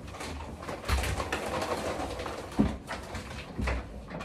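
Paper and plastic shopping bags rustling as they are carried into a small room, with a sharp knock about two and a half seconds in and a softer one near the end, as of the bags or a hand bumping the door.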